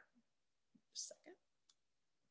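Near silence, broken about a second in by a woman's voice saying something short and quiet under her breath.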